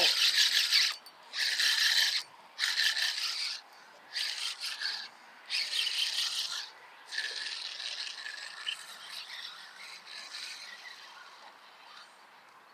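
Spinning reel being cranked in short spurts, its gears giving a rasping whir about six times with brief pauses between. The last run is longer and fades out. A hooked fish is being reeled up.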